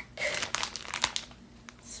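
A thin clear plastic bag crinkling as it is handled in the hands, a dense run of crackles for about the first second that then thins out to a few faint clicks.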